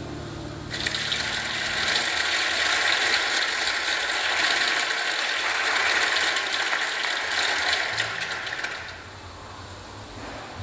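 Audience applause that starts about a second in and runs until it dies away near the end, over the last chord of the live band fading out during the first two seconds.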